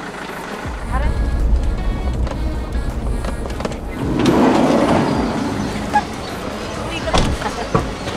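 Low rumble of a car's engine and tyres heard from inside the cabin. From about four seconds in it gives way to the chatter of a crowd, with a few sharp clicks near the end.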